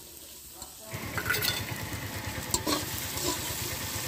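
Sliced onions, garlic and whole spices frying in oil in a large metal kadai (wok), stirred with a metal spatula that scrapes and clicks against the pan. The stirring and sizzling pick up about a second in.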